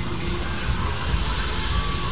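Funfair ambience: a steady low rumble of ride machinery under fairground music.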